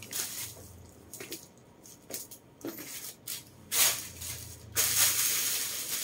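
Handling noises from off camera: scattered soft clicks and brief rustles, then a louder, continuous rustling from about five seconds in.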